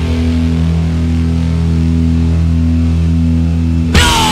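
A quiet break in a heavy rock track: a held, low pulsing drone of a few steady notes, with one note shifting about every second. Right at the end the full band comes back in.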